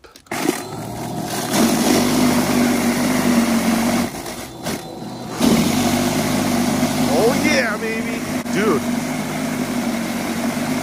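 Toro 60V Max cordless power shovel's brushless electric motor and rotor running, churning through and throwing heavy slush, with a steady hum. The sound drops away for about a second and a half around four seconds in, then picks up again.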